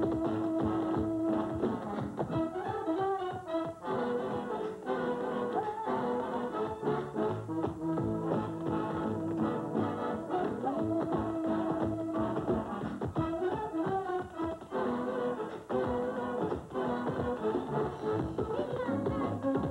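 Jazz band music from an old film soundtrack, with a brass melody whose notes slide upward into held tones, and tap dancing clicking over it.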